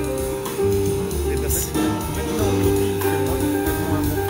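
Live free jazz from a piano, double bass and drum trio, with long held notes that bend in pitch over a steady low bass.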